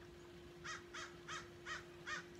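A bird calling faintly in the distance: a run of five short calls about a third of a second apart, starting about half a second in.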